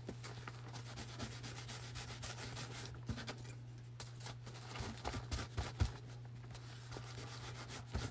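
Faint rubbing of a baby wipe along a wooden giant craft stick, wiping stain on, with a few light knocks in the middle.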